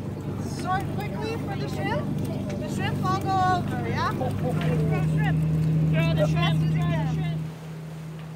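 Boat engine running with a steady low hum under people talking on deck; the hum grows stronger about halfway through and drops away near the end.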